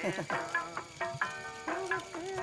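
A mobile phone ringing with a song as its ringtone: a sung melody in short phrases with held, wavering notes.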